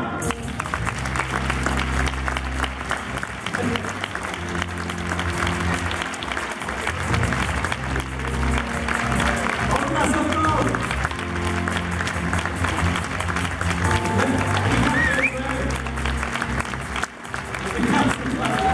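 Upbeat entrance music with a pulsing bass line, played over a live audience clapping, with voices in the crowd.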